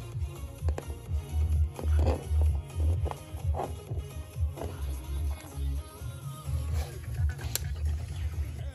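Music with a strong, rhythmic bass beat playing from a touch-screen internet radio's stream. There is one sharp click near the end.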